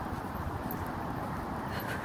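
Steady low rumble of street background noise on a handheld phone microphone, with a few faint clicks.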